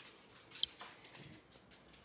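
Faint patter of a small dog's claws on a hardwood floor as a miniature schnauzer moves about, with one sharp click about half a second in.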